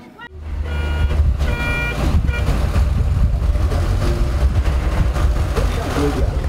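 A minibus engine running with a steady low rumble, with three short beeps about a second in.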